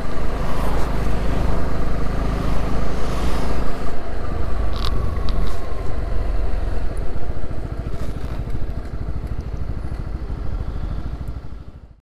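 Honda CB125R's single-cylinder engine running on the road; its note changes about four seconds in, and the sound fades away near the end.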